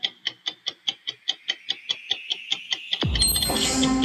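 Clock-ticking sound effect, fast and even at about five ticks a second. About three seconds in, loud music with a beat comes in over it.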